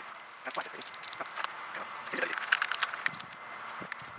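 Milwaukee tin snips biting and chewing at an Otto hex bike lock's thick outer layer of metal and fiber, a run of sharp clicks and crunches. The clicks come in clusters about half a second in and again about two and a half seconds in.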